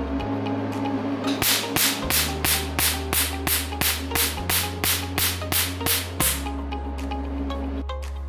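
A Q-switched Nd:YAG 1064 nm laser handpiece fires pulses at a black card: a fast, even run of sharp snaps, about four a second. Each snap is a pulse blasting a white dot into the card. The snaps start about a second and a half in and stop about six seconds in, over background music.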